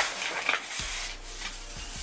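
A ceramic candle holder scraping and rubbing against a plate as it is handled and picked up, with a sharper knock about half a second in.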